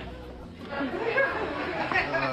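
A short lull, then indistinct voices speaking from about half a second in.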